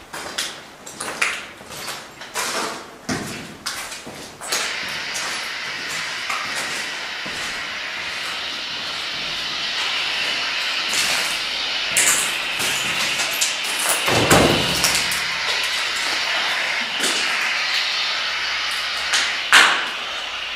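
Handling clicks and knocks for the first few seconds. From about four seconds in, a radio gives a steady hiss of static as it is set up to scan frequencies for spirit voices, with a single thump about fourteen seconds in.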